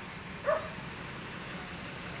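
A dog barks once, briefly, about half a second in, over steady outdoor background noise.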